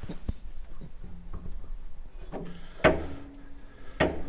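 Light clicks and knocks of handling inside a tank's steel driving compartment, with one sharp knock about three quarters of the way through, followed by a brief low steady tone.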